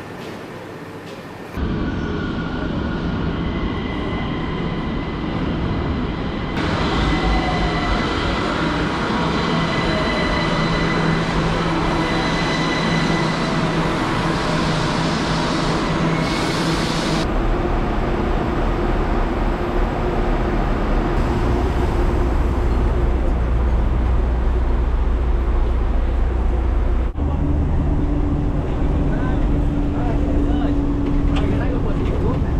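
Metro train at an underground platform: a steady rumble with a high, even whine, starting suddenly about two seconds in. About halfway through it gives way to a deeper engine drone and road noise heard from inside a city bus.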